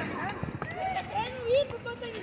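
Voices of players calling out, softer than the nearby commentary, with a few faint scuffs of footsteps.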